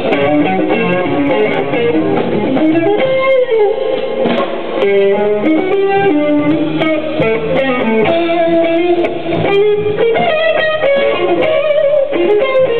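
Jazz-fusion trio playing live: an electric guitar leads with notes that bend in pitch, over bass guitar and drums.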